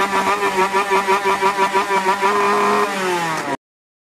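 Small two-stroke moped engine held at high revs, its note pulsing rapidly and unevenly. Near the end the revs drop, and the sound cuts off abruptly.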